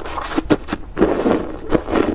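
Loud slurping of wide, flat noodles in spicy red broth, sucked into the mouth in two pulls. The second pull starts about a second in and is longer than the first.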